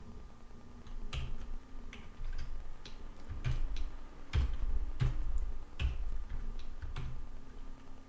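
Computer keyboard typing: a dozen or so irregular keystroke clicks over several seconds, some with a dull low thump.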